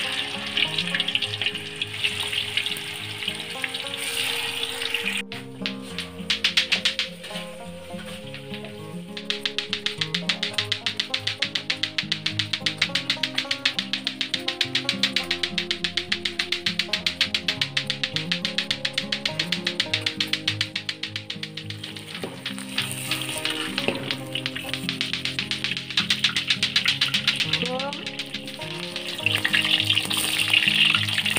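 Oil sizzling in an iron wok as cubes of tofu fry, and later salted pindang fish, under background music that plays throughout; the sizzle is strongest at the start and again near the end.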